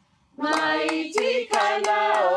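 A group of voices singing a traditional Central Province, Papua New Guinea song in several parts. The singing starts after a brief silence about a third of a second in, with sharp percussive strikes keeping time.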